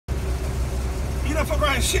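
Semi truck's diesel engine idling with a steady low rumble, heard from inside the cab.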